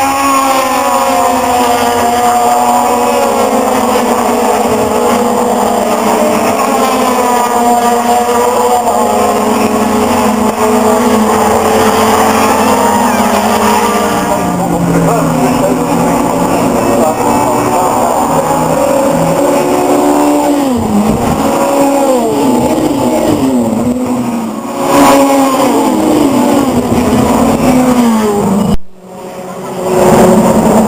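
A pack of BTCC touring cars racing past, several engines at once revving up and dropping in pitch through the gears as they go through the corner.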